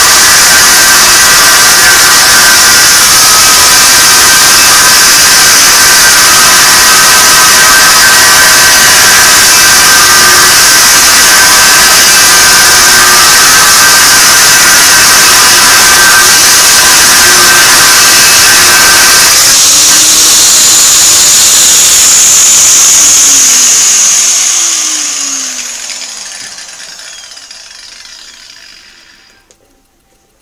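Makita 850-watt angle grinder with a thin cutting disc slicing through the steel wall of a propane gas bottle, loud and steady. About twenty seconds in the sound changes, then the grinder winds down with a falling pitch and fades out over the last several seconds.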